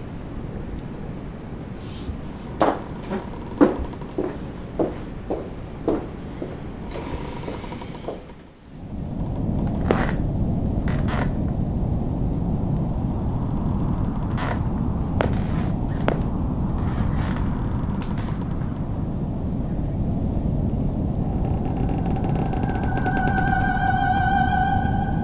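Dramatic film soundtrack. A quick run of sharp knocks and clicks gives way, about nine seconds in, to a steady low rumble with several hard hits over it, and held musical tones come in near the end.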